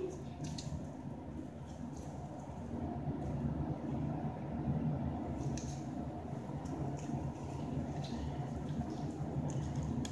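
Faint squishing and rubbing of a wet, water-filled glove being twisted and knotted by hand, with a few soft clicks scattered through, over a steady low background hum.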